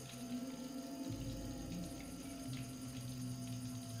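Quiet, low sustained drone from a film soundtrack: one steady held tone with a deeper hum beneath it, ominous underscore between lines of dialogue.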